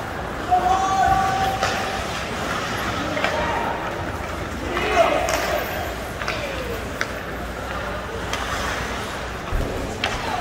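Ice hockey rink during play: spectators' voices and calls, one drawn-out shout about a second in, with sharp clacks of sticks on the puck scattered through.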